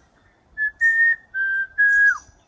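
A man whistling clear notes to call in a chestnut-crowned antpitta. There are four notes: a short one, a longer one, a slightly lower one, and a last one that drops in pitch as it ends.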